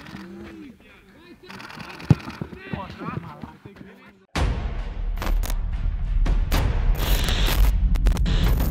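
Players' voices call out on the training pitch, with a sharp ball kick about two seconds in. A little after four seconds in, a loud outro music sting cuts in suddenly: booming drum hits under crackling, glitchy bursts of noise.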